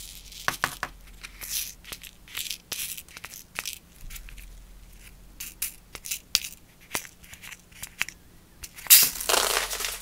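Tiny glass pixie crystals rattling and sliding in a plastic triangle gem tray, with fingernails clicking against the plastic. About nine seconds in, the tray is tilted and the crystals pour across it in a loud, hissing slide.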